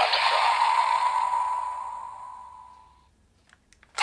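Electronic sound effect from a DX Assault Grip transformation toy: a steady high tone trailing off after the finisher voice line, fading out over about three seconds. A few faint plastic clicks of the toy being handled follow near the end.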